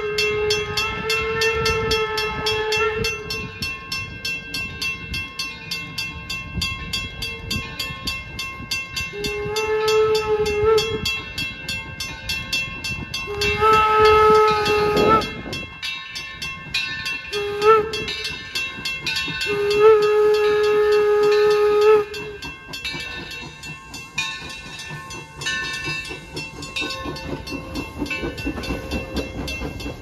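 Steam whistle of the 1873 Mason 0-6-4T locomotive Torch Lake blowing a chime-like chord in separate blasts: a long one at the start, then two long blasts, a short one and a long one, the grade-crossing signal. The last long blast ends about 22 seconds in. A steady rhythmic clatter of the moving train runs underneath, and the whistle's pitch sags as one blast dies away.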